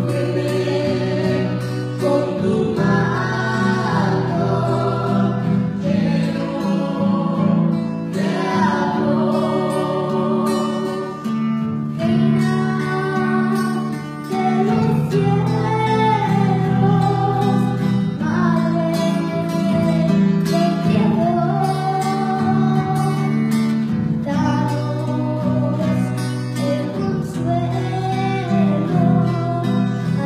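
A young girl singing a Spanish Catholic hymn to the Virgin Mary, accompanied by a strummed guitar.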